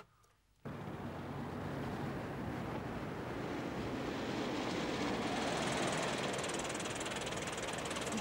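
Street traffic noise with a red taxi driving up, engine and tyres. The sound cuts in abruptly just under a second in and swells gradually as the car comes closer.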